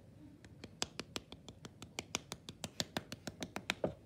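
A flat plywood paddle tapping the outside wall of a clay pinch pot held in the hand: a steady run of light, sharp taps, about five a second, starting about half a second in. The paddling smooths away fingerprints and firms up the pot's walls.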